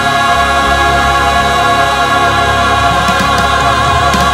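Choir and orchestra holding one long chord, the voices steady with a slight vibrato over a sustained bass: the final held chord of a church choral anthem.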